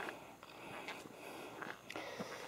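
Quiet outdoor background: a faint even hiss with a few soft clicks.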